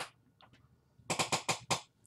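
Hands brushing and patting against the face and hair: four quick soft strokes about a fifth of a second apart, starting about a second in.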